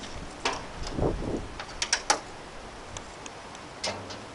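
Irregular clicks and soft thumps from handling a handheld camera and walking, with a cluster of sharp clicks about two seconds in and another near the end.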